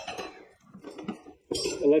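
Light clinks and knocks of a fender eliminator kit's bracket and small parts being handled on a wooden table. A man's voice starts speaking near the end.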